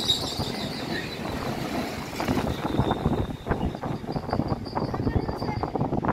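Freight train of tank wagons rolling past close by: a steady rumble of wheels on the rails, broken by many quick clicks and knocks.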